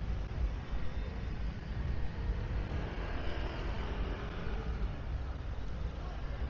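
Steady street background of road traffic, cars and motorbikes going by, with a constant low rumble and no single sound standing out.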